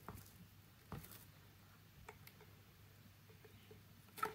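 Near silence with a few faint, soft ticks and rustles of hands handling and pressing gold foil heat tape onto a silicone intake pipe, the clearest about a second in, over a low steady room hum.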